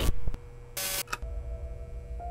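Sound effects of an animated logo sting: loud rock music cuts off right at the start, then a sharp click, a short burst of noise with another click about a second in, over faint sustained tones.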